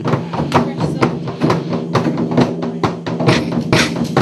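A drum roll: rapid drum strikes, about five a second, over steady low ringing tones.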